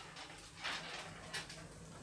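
Faint handling of small metal parts: hose clips and fittings being picked over in the hands at a workbench, with a couple of soft light clicks, over a low steady hum.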